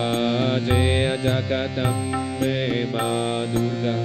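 Harmonium playing the chant melody over a steady reed drone, with a light, regular beat underneath.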